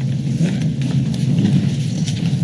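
Steady low rumble of room noise picked up by the meeting microphones, with soft scattered rustles and taps of papers being handled and pages turned.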